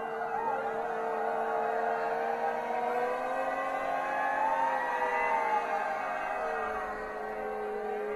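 A feral choir of many voices holding long, overlapping tones, several sliding slowly up and down in pitch, with one higher voice rising and falling about halfway through.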